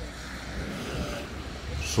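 Steady city street traffic noise: a low rumble of cars moving through the square.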